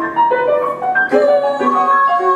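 Grand piano playing an art song, separate notes through the first second. About a second in a soprano voice joins on a long held high note over the piano.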